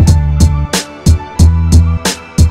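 Old-school boom bap hip hop instrumental beat: heavy kick drum and bass under sharp snare hits in a repeating pattern, with a sustained melodic sample on top.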